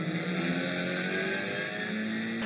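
In-car sound of a Honda TCR touring car's turbocharged four-cylinder engine running hard at high revs. It holds a steady buzzing note that steps slightly higher near the end.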